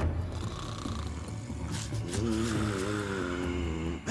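Cartoon snoring from sleeping characters, with a long wavering snore held through the second half, over soft background music.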